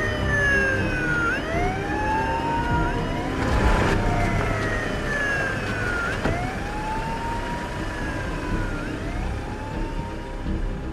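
Emergency vehicle siren wailing, its pitch sweeping slowly down and up in repeated cycles, with a brief burst of noise about three and a half seconds in.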